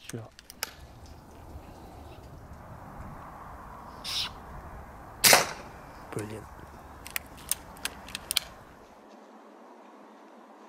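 Air Arms S510 Extra FAC .22 air rifle firing once, a sharp crack about five seconds in, followed about a second later by a short duller knock and then several light clicks.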